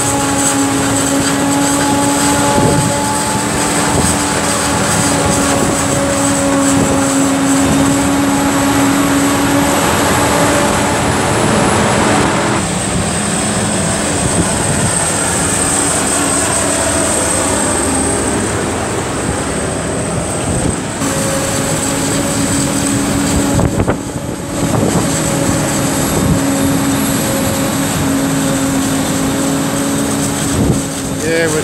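Claas Jaguar 950 forage harvester chopping maize, its engine and chopping gear running steadily under load: a loud, even hum with a high whine over it. The sound shifts abruptly twice, about 12 and 21 seconds in, and dips briefly near 24 seconds.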